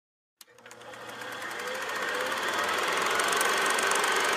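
A rapid, even mechanical clatter with a hiss starts with a click and swells steadily louder, a machine-rattle sound effect under an intro logo.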